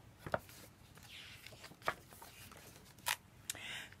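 Pages of a bound picture book being turned by hand: faint rustling of stiff pages with three light clicks or taps.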